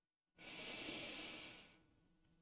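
A man's single audible breath, a faint soft hiss lasting about a second and a half.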